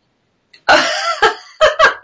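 Women bursting into loud laughter: a sudden breathy outburst about half a second in, then quick short laugh pulses near the end.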